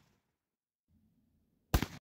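A single loud 12-gauge shotgun blast from a Panzer Arms M4 (a Benelli M4 clone), fired with No. 4 buckshot, about 1.7 seconds in, cut off abruptly. A faint low rumble comes just before it.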